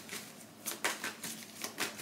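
Tarot cards being handled and shuffled: a run of light, irregular clicks and taps, about five a second.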